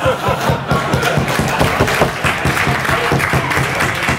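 Audience laughing and applauding, a dense patter of many hands clapping with laughter mixed in.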